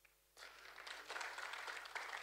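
Faint audience applause, many hands clapping, starting about half a second in after a moment of quiet.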